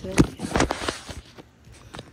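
Handling noise from a phone being jostled or grabbed: a sharp knock, then a quick run of knocks and rustles that dies away after about a second.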